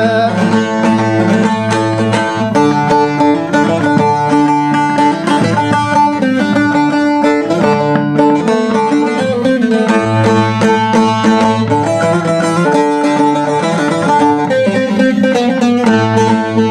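Bağlama (long-necked Turkish saz) played solo in an instrumental interlude of a Turkish folk song: a quick plucked melody over a low note that keeps ringing underneath.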